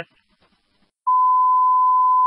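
Fire department radio dispatch alert tone: a single steady high beep lasting just over a second, starting about a second in and cutting off cleanly. It is the alert sent out ahead of a dispatch announcement.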